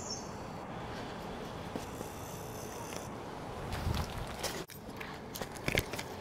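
Steady outdoor background hiss, then a few soft knocks and footsteps in the last two seconds as the handheld camera is carried through the garden.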